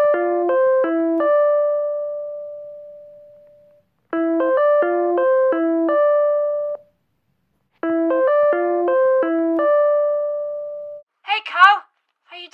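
Electronic piano-like ringtone: a quick run of notes ending on a held note, played three times with short pauses between, the ringing of an incoming video call.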